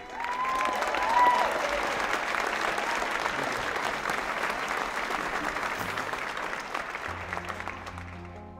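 Audience applauding, with a couple of brief calls from the crowd in the first second or so; the clapping fades near the end.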